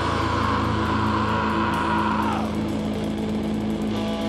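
Live rock band's distorted electric guitars holding a sustained chord without drums. The bright upper ringing fades about two and a half seconds in, leaving a low steady drone.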